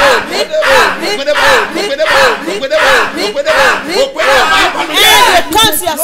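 A man's voice shouting a short word over and over in fervent prayer, about three shouts every two seconds, each rising and falling in pitch; the last shouts near the end are higher.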